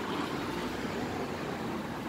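Steady hiss of outdoor street background noise, even and unbroken, with no single sound standing out.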